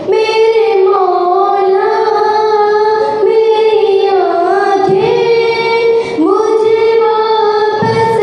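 A girl reciting a naat, a devotional Urdu poem in praise of the Prophet, singing alone into a microphone in long held notes with wavering ornaments. Three phrases, each starting after a short breath, about three and six seconds in.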